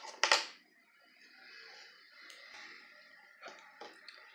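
Quiet handling of crochet yarn and a plastic crochet hook: a brief louder sound right at the start, then faint rustling and a few light clicks near the end.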